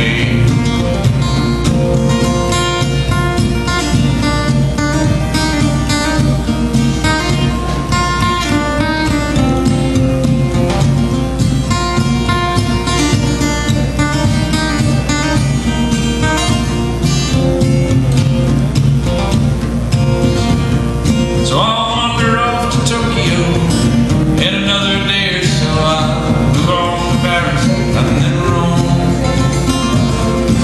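Solo acoustic guitar picking a bluegrass tune written for the banjo, with a man singing along. The voice stands out most clearly in the last third.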